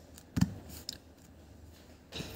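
Hands pressing a glued paper strip down onto a cloth-covered table: one soft thump less than half a second in, then a few faint paper clicks.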